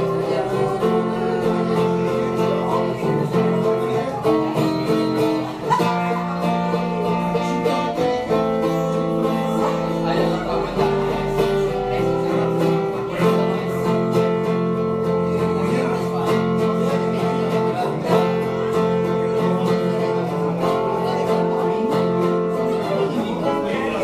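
Acoustic guitar playing an instrumental passage of a romantic ballad, strummed chords that change every few seconds with picked melody notes over them.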